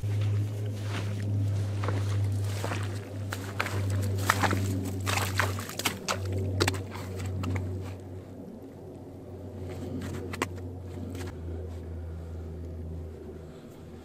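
Boots crunching in wet, trampled snow, a dense run of crunches over the first eight seconds and only a few after, over a steady low hum.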